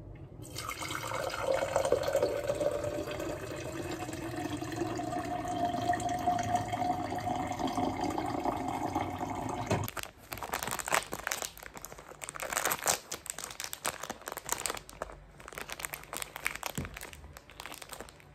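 Water running into a plastic tumbler for about nine seconds, its pitch slowly rising as the cup fills, then stopping abruptly. After that, a plastic food wrapper crinkling in irregular crackles.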